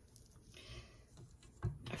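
Near quiet, with faint scraping of a rubber spatula against a stainless steel mixing bowl and a light knock about one and a half seconds in; the stand mixer is not running.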